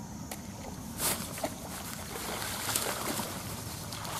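A fishing rod being cast: a brief swish about a second in, over a steady low outdoor rumble, with a few soft clicks.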